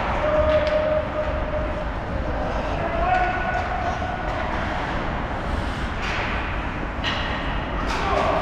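Voices calling out across an ice hockey rink, echoing in the arena over a steady wash of rink noise. There are a couple of held shouts early and in the middle, and a few sharp stick-or-puck knocks near the end.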